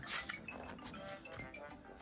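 Faint background music with the soft rustle of a picture-book page being turned by hand.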